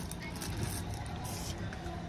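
Steady low outdoor background hum with faint voices in the distance.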